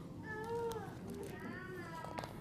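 Two short, faint, high-pitched vocal sounds from a young child, each about half a second long with wavering pitch.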